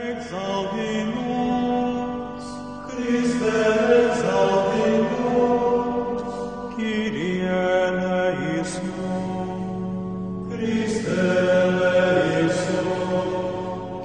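Chant music sung by several voices on long held notes, moving to a new phrase every three to four seconds.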